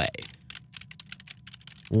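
Computer keyboard typing: a quick, irregular run of key clicks.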